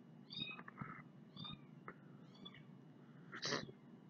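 A cat meowing faintly: three short, high-pitched mews about a second apart. A short breathy noise comes near the end.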